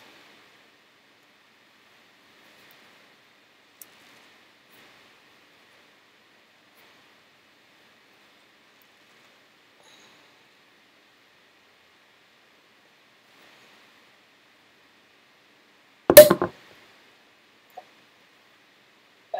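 Mostly faint room hiss, then about sixteen seconds in a single loud pop with a short tail as the cork comes out of a cage-and-corked, bottle-conditioned Belgian saison bottle. A small click follows just before the end.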